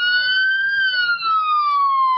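Emergency vehicle siren wailing: the pitch rises to a peak just under a second in, then slowly falls.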